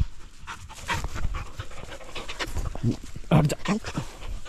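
Two dogs panting in quick breaths as they run up through the grass and start playing.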